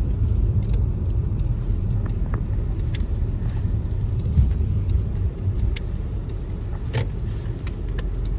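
Road and engine noise heard inside a moving car's cabin: a steady low rumble, with a few faint clicks.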